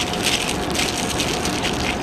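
Parchment paper crinkling and rustling in irregular bursts as a zucchini is wrapped in it by hand, over a steady, fairly loud background noise with a faint constant hum.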